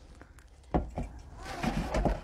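Two soft knocks about three-quarters of a second and a second in, then low thumps and rustling of drink containers being handled.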